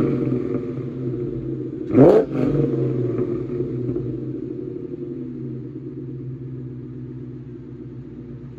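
Supercharged 4.6-litre V8 of a 2003 Ford Mustang SVT Cobra, breathing through long-tube headers, a catless off-road X-pipe and a Bassani catback exhaust. It idles, gives one quick blip of the throttle about two seconds in that rises and drops straight back, then settles to idle again.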